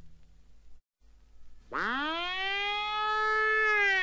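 A ringing chord fades out into a moment of silence; then, about a second and a half in, a siren wail starts, rising steeply and holding high as the next song on the record begins.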